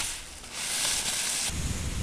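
Skis carving on snow: a hiss of the edges scraping, swelling about half a second in and stopping suddenly about a second and a half in. It gives way to wind rumbling on the microphone.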